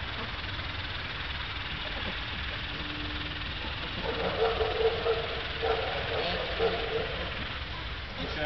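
A steady low background rumble, with faint, indistinct voices talking in short bursts from about four seconds in.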